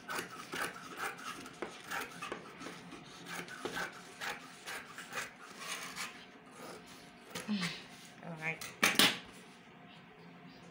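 Scissors snipping through printed dress fabric in a run of quick, short cuts, the metal blades clicking and the cloth rasping. A single louder knock comes near the end as the metal scissors are set down on the wooden table.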